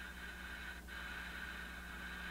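Faint static from a Tektronix spectrum analyzer's demodulated detector audio as it slowly sweeps across the FM broadcast band, too garbled to make out, with a brief click a little under a second in and a steady low hum underneath.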